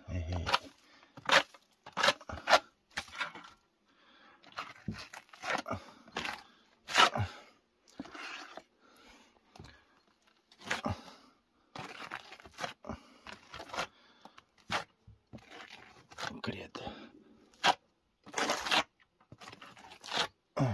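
Hand trowel scraping wet plaster mix out of a plastic bucket and pressing and smoothing it onto a masonry wall base, in irregular short scrapes and taps.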